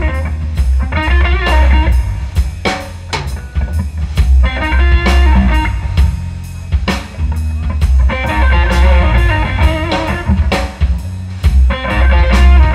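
Live blues band playing an instrumental passage: electric lead guitar plays runs of notes in phrases a few seconds apart, over electric bass and a drum kit keeping a steady beat.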